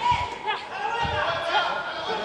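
Overlapping voices calling out in a large hall, with a couple of dull thuds near the start and about a second in.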